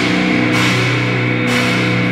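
A live metal band playing loud: distorted electric guitar chords held over drums, with a cymbal wash that stops near the end.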